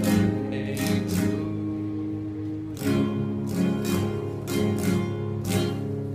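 Nylon-string classical guitar strummed in full chords, about nine strokes, each left to ring, with a longer held chord about a second in.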